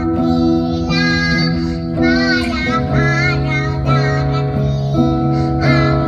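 A young girl singing, accompanied by an acoustic guitar.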